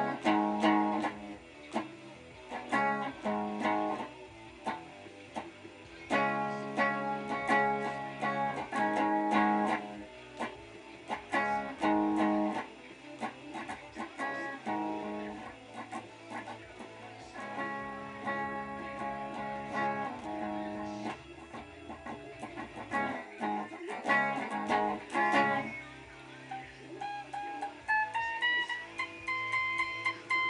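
Electric guitar being strummed in short bursts of chords with brief pauses between them, then single notes climbing in pitch near the end.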